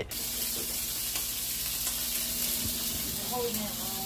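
Steady hiss of butter sizzling in a hot frying pan, with a faint short whine from a dog near the end.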